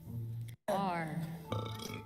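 Upbeat show background music with a bass line, looping, with a comic sound effect whose pitch falls in a quick sweep just under a second in. The sound cuts out completely for a moment about half a second in.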